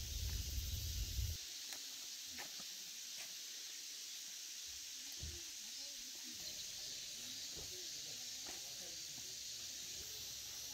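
Wind rumbling on the microphone, stopping suddenly about a second and a half in. After that comes a faint, steady hiss with a few soft ticks.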